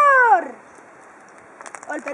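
A long drawn-out vocal call slides down in pitch and ends about half a second in. A quiet stretch follows, with a few small clicks and a voice starting up again near the end.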